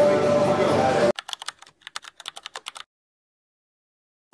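Busy bar din of music and voices cuts off about a second in. A rapid run of computer-keyboard typing clicks follows for about a second and a half, a typing sound effect over on-screen text, then dead silence.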